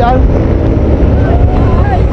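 Heavy wind rumble on the microphone of a moving camera vehicle, mixed with a low engine drone, as it travels at racing speed. A faint voice can be heard about halfway through.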